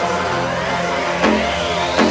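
Electronic dance music with a dubstep feel and no vocals: layered synth lines gliding up and down in pitch, with the deep bass thinning out as it begins.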